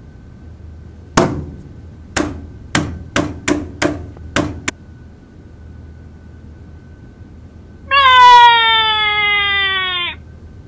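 About seven sharp knocks or taps, irregularly spaced over three or four seconds. Then, near the end, a loud drawn-out high call that slides slowly down in pitch and lasts about two seconds.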